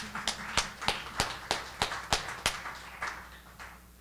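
Light applause from a small audience in a room, with one person's claps standing out at about three a second. The applause fades away by about three seconds in.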